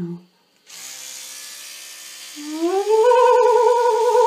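An electric toothbrush buzzes. A voice then slides up into a long held hum that wobbles rapidly, shaken by the vibrating brush pressed against the cheek.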